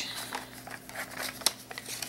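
Paper envelope rustling and crinkling as hands open its flap and handle it. Small scattered clicks, with one sharper tick about one and a half seconds in.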